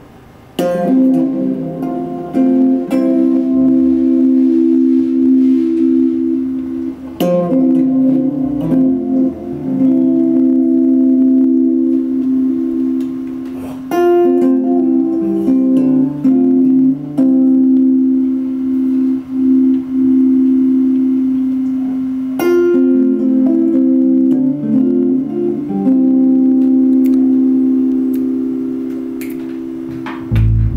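Electric guitar playing alone: strummed chords are held and left ringing, with new chords struck about one, seven, fourteen and twenty-two seconds in and smaller chord changes in between.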